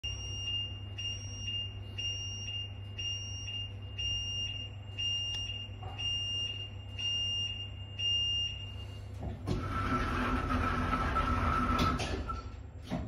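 The lift's door warning beeper sounds a high beep about once a second, over a steady low hum. After about nine seconds it stops, and the cabin's automatic sliding doors run shut: a louder rushing rumble with a steady whine, lasting about three seconds.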